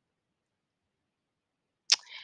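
Near silence, broken near the end by a single sharp click followed by a brief breathy noise.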